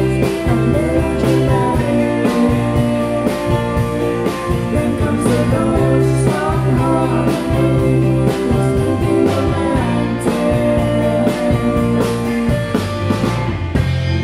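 Live indie rock band playing: electric guitars, bass, keyboard and drum kit with a steady beat. Right at the end the drums stop and a chord is left ringing.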